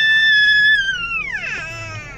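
A long, very high-pitched vocal squeal, held on one note for about a second and then sliding down in pitch near the end.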